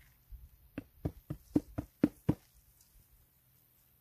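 A quick run of about eight dull knocks, about four a second, lasting a second and a half.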